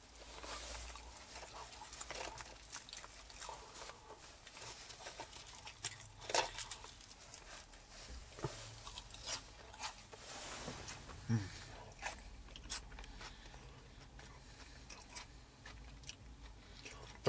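A person chewing fish and chips close to the microphone: faint, irregular small clicks and crunches of biting and chewing, with a short hummed 'mmm' of approval about eleven seconds in.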